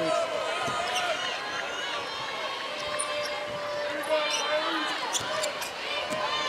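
A basketball being dribbled on a hardwood court during live play, with short high squeaks of sneakers on the floor.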